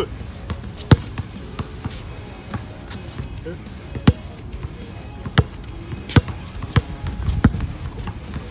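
A basketball being dribbled on an outdoor asphalt court: about eight sharp, unevenly spaced bounces, the loudest ones about a second in and around the four-second mark.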